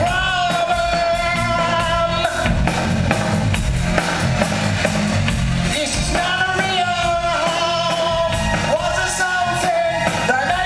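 A live post-punk rock band playing: a male singer holds long, wavering sung notes over steady drums and bass, with a break in the singing midway before the voice comes back in.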